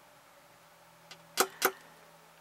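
Two sharp clicks or taps about a quarter second apart near the end, with a faint tick just before them, over a faint steady hum.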